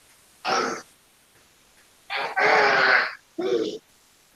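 A person's voice in short unworded bursts: a brief sound about half a second in, then a longer one with a wavering pitch from about two seconds in, breaking off near the end.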